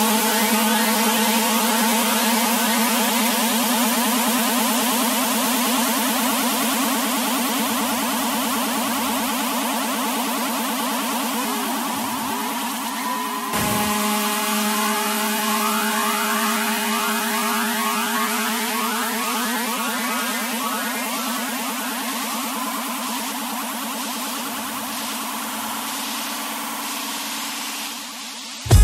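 Techno breakdown with the kick drum and bass taken out: a wash of white noise and held synthesizer tones that slowly fades, with a brief dip and fresh start about halfway through.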